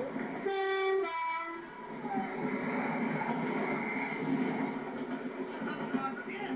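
Diesel multiple unit sounding a two-tone horn, two short notes back to back about a second in, then the steady running noise of the unit as it approaches.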